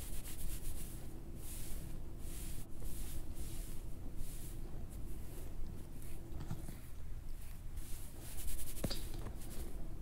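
Soft brushing and rubbing strokes close to the microphone, about one or two a second, as in ASMR hair play, with a single sharp tap near the end. A faint steady low hum runs underneath.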